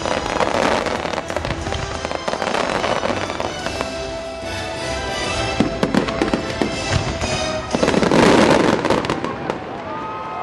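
Fireworks finale bursting and crackling over the show's soundtrack music, with a loud, dense barrage of bangs about eight seconds in.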